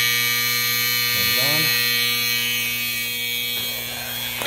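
Alarm buzzer of a Whitewater DF-series aerobic septic control panel sounding, a harsh, shrill steady buzz that starts suddenly as the panel's switch is worked, over a low electrical hum.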